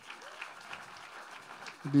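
Audience applauding: a soft, even clapping haze.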